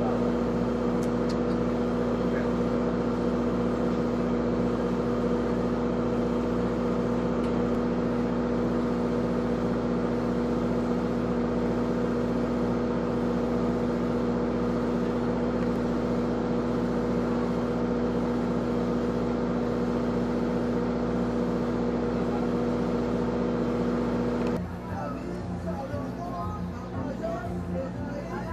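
Boat engine running at a steady speed, a constant droning hum that stops abruptly near the end.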